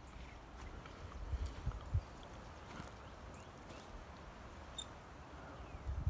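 Footsteps crunching on dry grass and brush, with a few soft thumps about one and a half to two seconds in, over a steady low rumble of wind buffeting the microphone.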